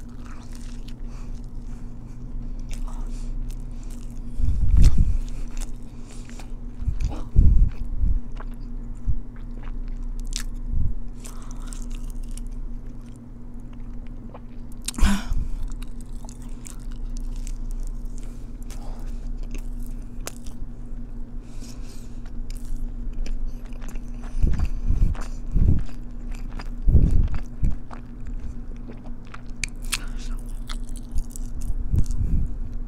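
Close-miked biting and chewing of a Korean corn dog, in irregular mouthfuls, with the loudest chews about five and eight seconds in and again near the end. A steady low hum runs underneath.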